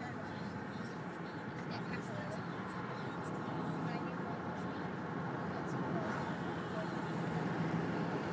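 Steady road and engine noise heard inside a moving car's cabin, a constant low hum under a broad rush of tyre noise, growing a little louder toward the end.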